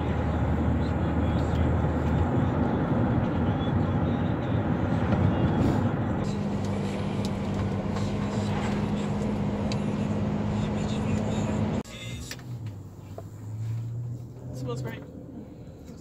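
Road and engine noise inside a moving car: a steady rushing drone with a low hum. About twelve seconds in it drops abruptly to a much quieter cabin sound.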